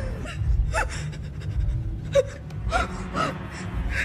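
A woman's short, distressed gasps and whimpers, about five of them, over low bass-heavy background music.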